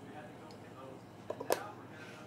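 Quiet handling with two light clicks about a second and a half in, the second sharper: a glass test tube set down into a plastic test-tube rack.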